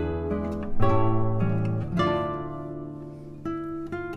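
A duo of classical guitars playing a piece: plucked chords and melody notes, with strong attacks about every second or so that ring out and fade.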